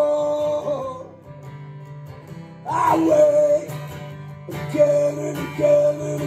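Live solo acoustic music: a steel-string acoustic guitar strummed under a man singing long held notes with no clear words. There is one held note at the start and another about three seconds in, then a run of shorter repeated notes near the end.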